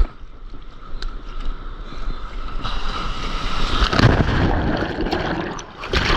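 Sea water splashing around a surfboard's nose, then a breaking wave's whitewater rushing over the board, building from about three seconds in and loudest near four seconds.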